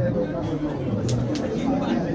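Spectators' voices talking nearby, several people speaking at once.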